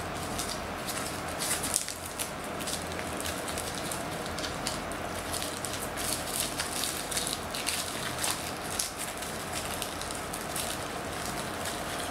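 Plastic bubble-wrap packaging being handled and pulled open, crinkling and crackling in many small clicks throughout.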